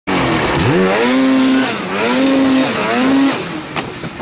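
Polaris Axys RMK snowmobile's two-stroke engine revving hard under throttle on a hillclimb: the pitch rises steeply about half a second in, holds high, and eases off and picks up again twice before dropping near the end. A short sharp click comes just before the end.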